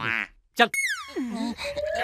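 Cartoon sound effect: a sharp swoop falling in pitch, boing-like, just after a man's single spoken word, with a second glide rising steeply near the end.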